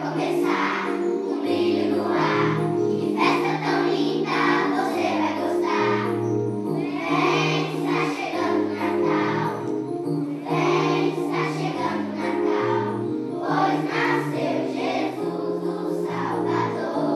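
Children's choir singing a song in phrases, accompanied by an electronic keyboard holding sustained low notes.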